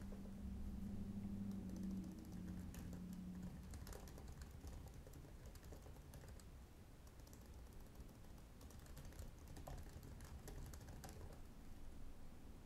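Faint typing on a computer keyboard: irregular runs of key clicks as a sentence is typed, with a low hum under the first few seconds.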